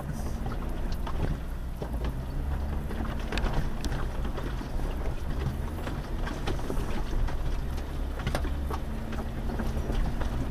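Off-road vehicle engine running at low speed under load while crawling up a steep rocky hill, with scattered knocks and clunks from the tires and suspension going over rocks.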